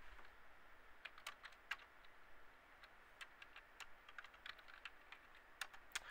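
Faint, irregular clicks of computer keys and buttons, with a slightly louder click near the end.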